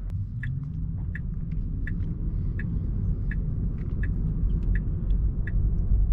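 Low road and tyre rumble inside the cabin of a 2024 Tesla Model 3, an electric car, so no engine is heard. The rumble grows slowly louder as the car picks up speed through a left turn, and the turn signal ticks faintly about twice a second.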